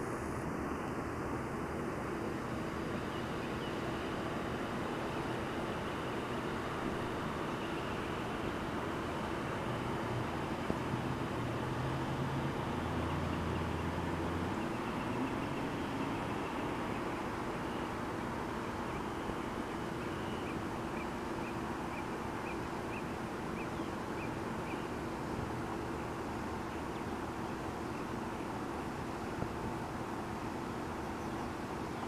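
Steady outdoor background hiss. A low rumble swells and fades about halfway through, and a little later comes a run of faint, evenly spaced high chirps.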